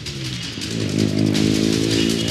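A nearby motor vehicle engine running, a steady hum that grows louder about a second in.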